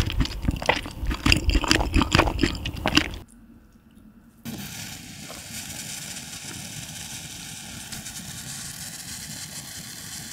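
A person chewing a mouthful of braised kimchi and pork belly close to the microphone: dense wet crunching and clicks. It cuts off about three seconds in, and after a second of near silence only a faint steady hiss remains.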